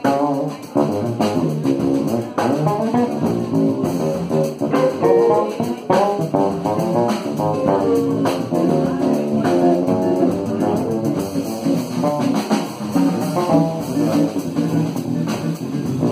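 Small jazz band playing live, with electric bass and drum kit under a moving melodic lead line.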